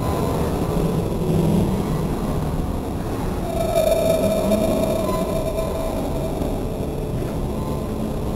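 Steady low rumble of a turning carousel heard from on board the ride, with a single higher steady tone held for about two seconds midway.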